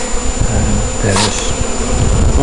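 Honeybees buzzing around the entrance of a wooden hive in a steady, dense hum, with a brief rustling noise a little over a second in.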